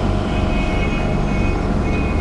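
Steady, fairly loud hum and hiss that does not change.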